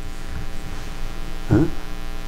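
Steady electrical mains hum in the recording, a buzz made of many evenly spaced steady tones. A man's voice breaks in briefly with a short 'Eh?' about one and a half seconds in.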